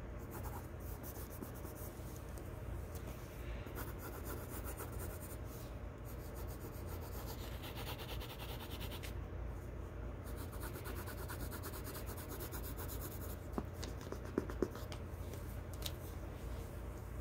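Pencil scratching lightly over drawing paper in short strokes. A couple of light taps come near the end.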